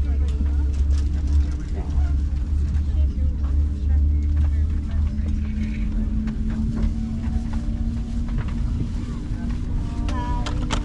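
Steady low rumble and hum of an Airbus A330-900neo's cabin air system with the aircraft at the gate, plus a murmur of passengers' voices. The rumble is heaviest in the first half, and a second, lower hum joins about halfway.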